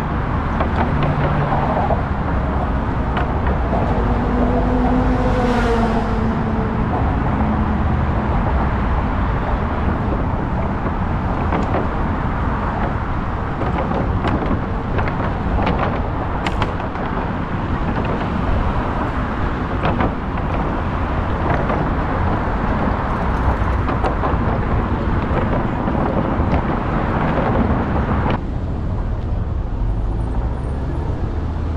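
Steady traffic noise and low wind rumble heard from a bicycle riding over a wooden-plank bridge walkway, with scattered clicks and rattles. The sound turns duller near the end.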